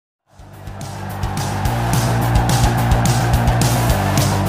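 Music starting after a brief silence and fading up to a loud, steady level, with a regular drum beat.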